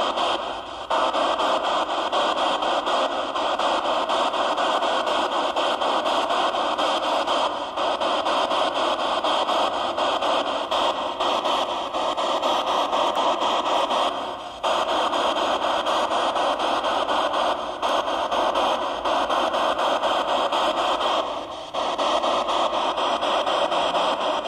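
Home-built ghost-hunting spirit box putting out a steady hiss of radio static, with short dropouts about every seven seconds.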